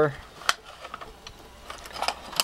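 Clay targets clicking against each other and the magazine tube of an automatic clay thrower as a stack is loaded by hand: one sharp click about half a second in, then a few lighter clicks near the end.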